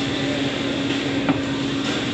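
Steady mechanical hum of restaurant room noise, with one constant low drone running through it and a single short click a little past halfway.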